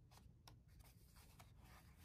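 Faint paper rustling and a few soft taps as the pages of a Hobonichi Cousin journal are handled, with a page starting to turn near the end, over a low room hum.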